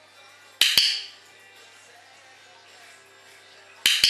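Training clicker clicked twice, about three seconds apart, each a sharp double click from press and release; in clicker training each click marks the moment the kitten earns its food reward. Faint music plays in the background.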